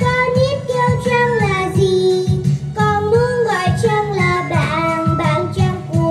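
A young girl singing a melody into a handheld microphone, with instrumental accompaniment underneath.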